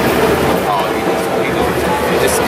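Busy street ambience: motor traffic passing, with a few scattered voices from people standing around.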